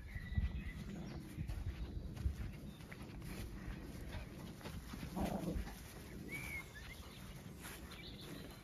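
A brief animal call about five seconds in, over the soft thumps of footsteps on grass, with a short bird chirp a second later.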